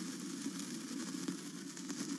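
A burning sparkler sizzling: a steady hiss with faint scattered crackles.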